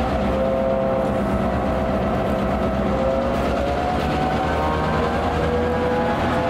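EMD diesel locomotive engine idling: a steady deep throb, with whining tones above it that drift slowly up and down.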